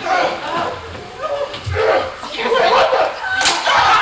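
Indistinct talking in a large hall, with one sharp smack about three and a half seconds in.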